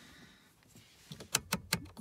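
Rotary headlight switch on a VW Up's dashboard turned by hand, clicking through its detent positions: a quick run of about five clicks in the second half.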